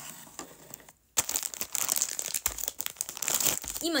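Plastic packaging crinkling and rustling close to the microphone, fainter at first and then loud and busy from just over a second in.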